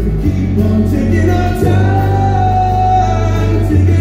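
Live country band playing, with acoustic guitar, electric guitar, bass, drums and keyboard, and singing carried on long held notes, one sustained through the middle.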